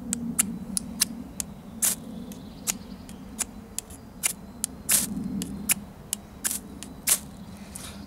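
Spine of a Mora Outdoor 2000 stainless-steel knife scraped down a ferrocerium rod in quick short strokes, two to three a second, each a brief sharp scratch. The spine lacks a true 90-degree edge, so striking works but is hard going.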